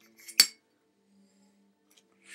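A single sharp clink of a glass, about half a second in, with a couple of small taps just before it.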